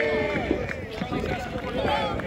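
Speech only: several people talking at once nearby, their voices overlapping.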